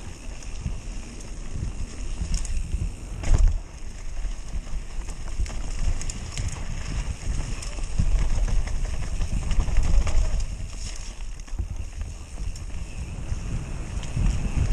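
Wind buffeting the camera microphone on a mountain bike descending at speed, over the rumble of knobby tyres on a dirt trail. Scattered rattles and knocks from the bike over bumps, the loudest about three seconds in.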